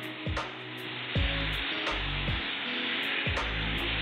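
Background music with a steady beat, over the gritty scraping rustle of a spoon stirring a thick mix of toasted sesame seeds, nuts and honey in a non-stick pot.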